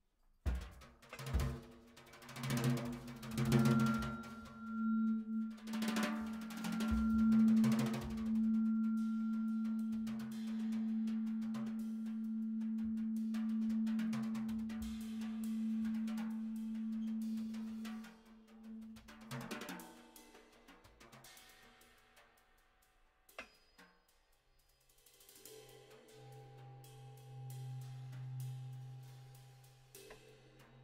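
Improvised percussion on a drum kit played with sticks and mallets, with cymbal and drum hits over a long held low tone for about fifteen seconds. After about eighteen seconds it thins to sparse, quiet strokes and a single sharp click, and a low hum comes in near the end.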